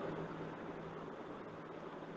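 Faint steady hiss with a low hum: the background noise of the voiceover recording, with no speech.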